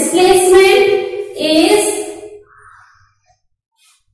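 A voice in two long, drawn-out, sing-song phrases, each about a second long, with held notes that step in pitch. The voice stops about two and a half seconds in.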